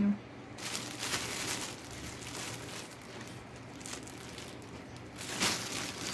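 Plastic packaging bag crinkling as hands rummage in it. The rustling is louder about a second in and again near the end.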